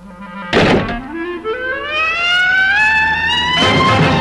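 A sudden thump about half a second in, then a film-score musical glide rising steadily in pitch for over two seconds, which leads into full orchestral music near the end.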